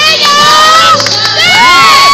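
A choir of high voices singing with whoops and shouts: swooping glides and held high notes.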